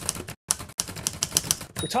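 Typewriter keystroke sound effect: a rapid run of sharp clacks, about ten a second, with a brief pause about half a second in.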